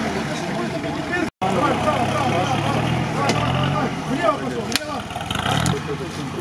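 Off-road vehicle engine running steadily under load during a recovery pull out of a water-filled pit, with people talking over it. The sound drops out for an instant a little over a second in.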